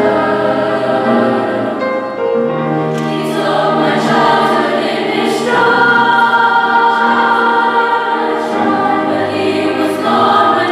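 Women's choir singing long held chords that shift to new notes every few seconds, with piano accompaniment.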